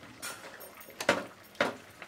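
A wooden spatula stirring and scraping thick, moist carrot-and-beetroot halwa with mawa in a non-stick pan: a faint stroke, then two stronger scraping strokes about half a second apart.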